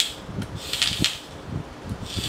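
Vape atomizer coil fired by a Lost Vape Mirage DNA75C box mod at about 70 watts, giving a short sizzling hiss about midway with a few light clicks. The mod fires at once, with no delay.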